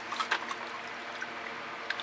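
Water trickling steadily, with a few light clicks near the start.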